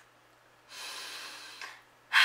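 A woman's audible breath, a soft hiss lasting just under a second, starting about halfway in.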